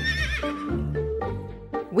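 A horse whinnying over background music: one wavering call that falls in pitch and fades out within about a second.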